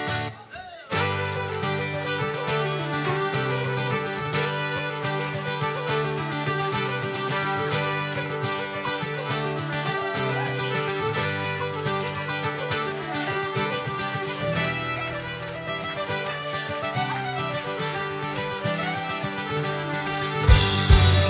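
Live Celtic-rock band playing a traditional tune: strummed acoustic guitar under fiddle and whistle carrying the melody, without drums. The music dips out briefly about half a second in, then comes back in.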